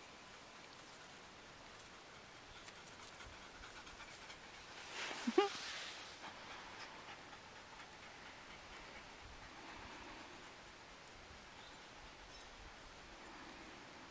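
A single breathy sigh about five seconds in, ending in a brief rising squeak of voice, over a faint steady background hiss.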